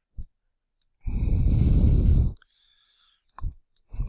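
A long breath let out into a close microphone, lasting over a second, with a short low thump just before it and a few small clicks near the end.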